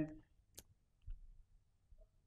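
Faint sharp click from a handheld presentation remote's button being pressed, about half a second in, followed by a soft low thump about a second in.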